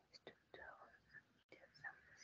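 Faint whispered speech coming through a video-call microphone, cutting out briefly about one and a half seconds in.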